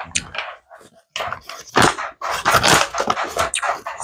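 Big League Chew gum pouch, foil-lined, crinkling in irregular bursts as shredded bubble gum is pulled out of it.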